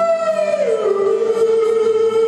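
A man singing one long high note into a microphone, with guitar accompaniment; the note slides down about half a second in and then holds at the lower pitch.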